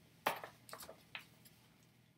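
A page of a large photo book being turned and handled: a few short, faint paper rustles and taps in the first second or so.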